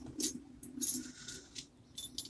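A hand rummaging in a trouser pocket, with a few light metallic clinks and rustles in the first second or so, as he searches for a key.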